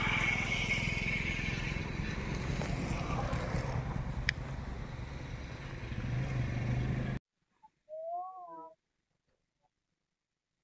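Wind buffeting a phone microphone in an open field: a steady low rumble that cuts off suddenly about seven seconds in. After it, near silence with one short warbling call.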